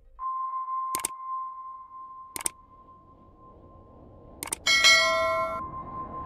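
Subscribe-reminder sound effects: three sharp clicks, the first about a second in and the others about a second and a half and two seconds after it, then a bright bell chime near the end, the loudest sound. A steady high tone runs underneath.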